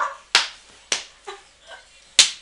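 Two sharp hand slaps about half a second apart, then a fainter one.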